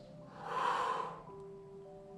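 A woman's single audible exhale, about a second long, breathed out on the effort of lifting her hips into a side plank, with soft background music underneath.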